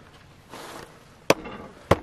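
Two short, sharp clicks about half a second apart, after a brief soft rustle.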